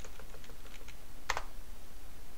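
Computer keyboard keys pressed lightly several times in quick succession, stepping down a boot menu, then one louder key press a little past a second in that launches the selected entry.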